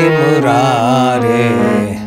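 A man's voice singing a long, wavering melismatic note of a Sanskrit devotional bhajan over a sustained harmonium chord. The voice stops near the end while the harmonium holds on.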